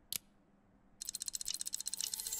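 Cartoon sound effect of a magic locket's clockwork: a single click, then from about a second in a fast, even clockwork ticking, about a dozen ticks a second, as the locket's gears turn.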